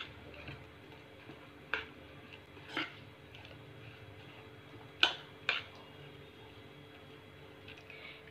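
A hand mixing chopped onion and herbs into coarse-ground rice-and-dal vada batter in a stainless steel bowl: faint mixing sounds with four short sharp clicks against the steel, the two loudest about half a second apart past the middle.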